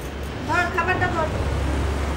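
Low, steady rumble of a motor vehicle, with a short high-pitched voice about half a second in.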